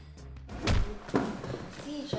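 Background music, then a heavy thud about two-thirds of a second in and a second sharper knock about a second in, from quad roller skates landing on a hardwood floor.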